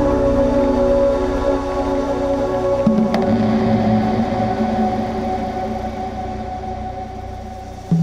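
Dark, suspenseful cinematic background music of long sustained pad chords over low bass notes. About three seconds in it moves to a new chord with a soft hit, then it slowly fades down toward the end.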